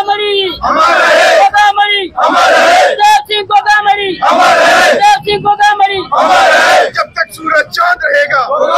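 A protest crowd chanting Hindi slogans in call and response. One man shouts each line and the crowd yells back together, about four times.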